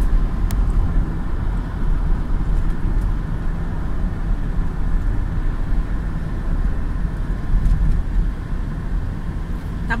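Steady low rumble of road and engine noise heard from inside a car's cabin while cruising on an expressway.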